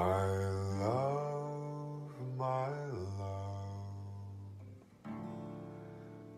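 Acoustic guitar being strummed, a few chords ringing out, while a man sings long held notes over it.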